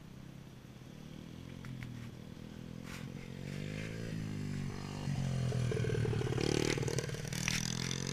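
Small youth dirt bike engine running and growing louder as it approaches, its pitch climbing and dropping back a few times as the rider works the throttle and gears.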